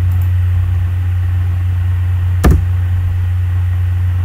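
Steady low electrical hum on the recording, with a single sharp click, typical of a mouse or keyboard click, about two and a half seconds in.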